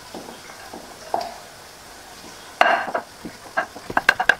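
Wooden masher pounding boiled potatoes and maize in a glass bowl: soft squashing strokes with a few sharp knocks, the loudest about two and a half seconds in, and quicker strokes starting at the very end.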